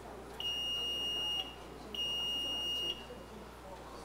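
Two long electronic beeps at one high, steady pitch, each lasting about a second, with a short gap between them.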